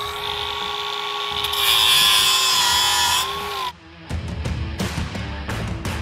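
Cordless angle grinder running with a steady whine, then digging into the edge of a steel pipe bevel about a second and a half in: a loud harsh grind as the motor's pitch sags under the load, a beginner's mistake that gouges the bevel. The grinder cuts off suddenly near the middle, and guitar-strummed background music follows.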